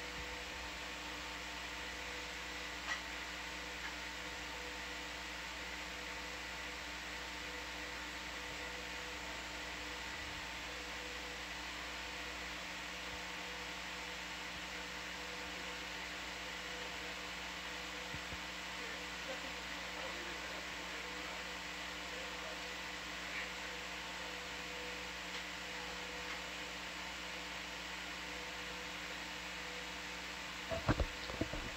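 Steady electrical hum and fan-like hiss with several faint steady tones, broken only by a couple of faint clicks.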